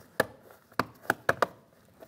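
Plastic interior door-panel trim cover being pressed into place by hand: five sharp clicks as it seats and its clips snap in.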